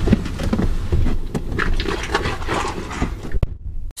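Rustling and light clicks of someone moving about in a pickup truck's cab, over a low steady rumble. The sound cuts off suddenly near the end.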